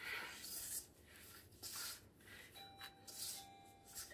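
Hands kneading soft bread dough in a bowl: a series of quiet rubbing swishes, each under a second. Faint steady tones come in a little past halfway.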